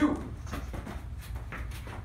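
Sneaker steps and scuffs on rubber gym flooring during a quick lateral shuffle against a resistance band: a few short, sharp sounds, the clearest near the end, over a low steady hum.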